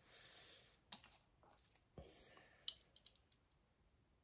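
Faint, scattered light clicks and taps, about six over a few seconds, from small parts being handled at a reloading press during a crimp die adjustment.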